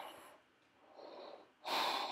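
A woman breathing: a faint breath about a second in, then a louder, longer breath near the end.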